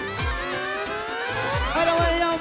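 Live band music: a steady drumbeat, about three beats a second, under a pitched melody line that slides steadily upward for nearly two seconds and then settles on a held note near the end.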